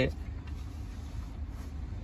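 Steady low background rumble with faint hiss, in a short gap between spoken phrases.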